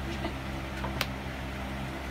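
Steady low room hum, with one sharp click about a second in as trading cards are handled on the play mat.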